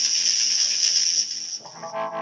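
Live electronic noise music from synthesizer and effects gear: a loud, harsh high hiss with crackle over a low held drone, giving way near the end to a new sustained cluster of tones.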